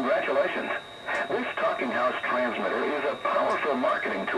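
A spoken message playing through a Tecsun PL-880 portable radio's speaker, received on the AM band from a Talking House TH5 low-power transmitter. The voice has no bass and has a faint steady high whistle under it.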